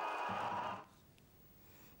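Ambient noise of a basketball game in an indoor sports hall, an even hubbub that cuts off suddenly under a second in, followed by near silence.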